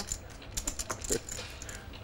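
Poker chips clicking together in quick, irregular bursts as a player handles his stacks at the table.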